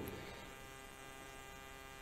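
Faint, steady electrical hum made of many even overtones. Nothing changes or breaks it; a man's voice trails off right at the start.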